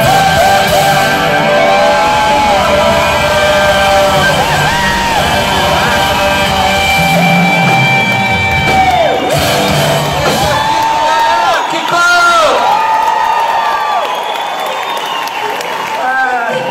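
Live rock band with an electric guitar playing a lead line full of bent, wavering notes over keyboards, bass and drums. The low end of the band thins out over the last few seconds, leaving the guitar and keyboards.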